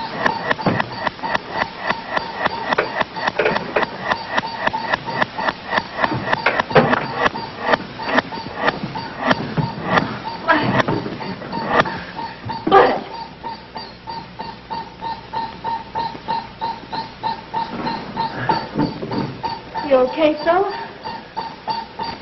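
A fistfight: blows and scuffling land in the first thirteen seconds or so. Under it runs a steady, rapid electronic beeping, the signal of the ship's 'automatic bloodhound' tracking transmitter. Near the end a dazed man groans.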